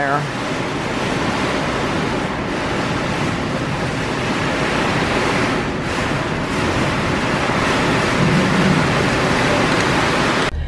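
Heavy storm rain pouring down, a loud, steady hiss of a downpour.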